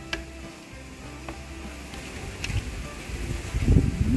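Soft background music with steady tones, and a few sharp clicks of wooden chopsticks against a stainless steel bowl as a crumbly brown rice and palm sugar mixture is stirred. A louder low thump comes near the end.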